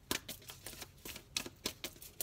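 A deck of oracle cards being shuffled by hand, the cards slapping and flicking against each other in quick irregular clicks, several a second.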